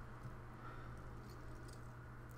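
Faint rustling and light scratches of a cardboard box and its paper insert as a sprinkler valve is lifted out, with a few soft ticks, over a steady low hum.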